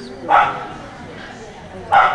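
A dog barking twice, short and loud: once about half a second in and again near the end.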